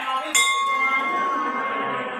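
Brass temple bell hanging in a wooden stand, struck once about a third of a second in and left ringing with a clear, steady tone that slowly fades.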